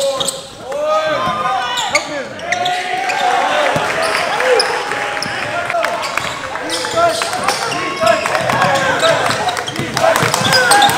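A basketball being dribbled on a gym's wooden court, with sneakers squeaking and players' and spectators' voices echoing around the gym.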